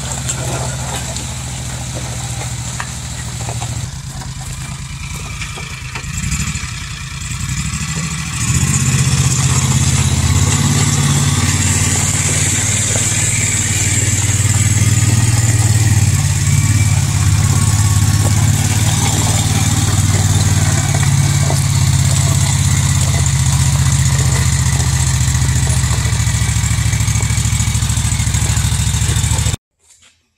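Utility vehicle's engine running steadily while it tows a combine header on its trailer over gravel, growing louder about eight seconds in and cutting off suddenly just before the end.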